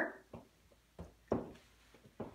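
A few soft, short knocks in a small room, about three strokes spread over the two seconds.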